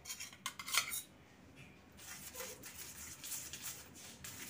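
A steel spoon clinking several times against a small steel bowl of ghee in the first second, then softer scraping of the spoon as ghee is spread on a roti on a steel plate.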